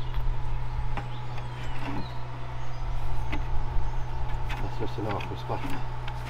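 Steady low hum of an idling engine, with a few sharp metallic clicks from hand tools working on the tractor's axle bolts.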